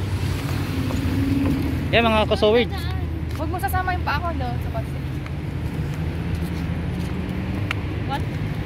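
Road traffic: cars passing close by, a steady low engine and tyre rumble.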